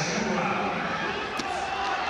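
Arena crowd noise with shouting voices, and a single sharp smack about one and a half seconds in.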